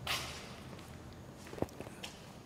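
A sharp swoosh right at the start, then soft footsteps on a stage floor and a single short knock about a second and a half in.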